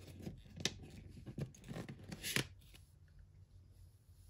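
A CD being slid out of the cardboard slot of a gatefold album sleeve: a run of short scrapes and taps of disc against card over the first two and a half seconds, the loudest near the end of them.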